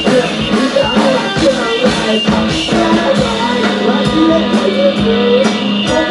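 Live rock band playing loudly: a singer over electric guitar and a drum kit.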